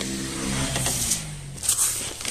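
An engine running, its pitch dropping through the middle, with the rustle and crunch of granular fertilizer being scooped from a plastic sack near the end.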